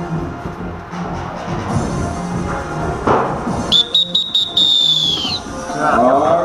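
Background music playing, with a single long, high whistle blast about four seconds in, stuttering briefly at its start and dropping off at the end: the referee's signal that the game is over.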